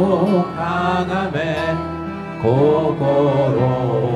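Live Christian worship song sung in Japanese by singers, accompanied by violins, classical guitar and double bass. The music dips briefly about halfway through, then swells again.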